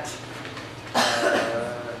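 A person coughing, starting suddenly about a second in and trailing off.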